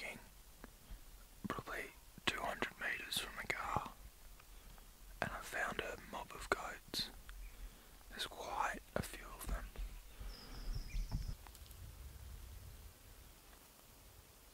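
A man whispering close to the microphone in short phrases with pauses, trailing off into quiet near the end.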